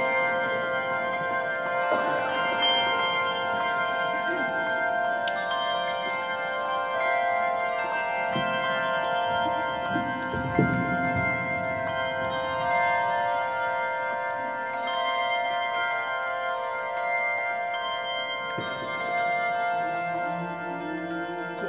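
Handbells rung by a choir, many sustained bell tones overlapping and ringing on in the cathedral's reverberation. A soft low knock is heard about halfway through.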